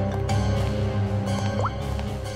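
Dramatic background score: sustained tones over a pulsing low bass, with one quick rising tone near the end.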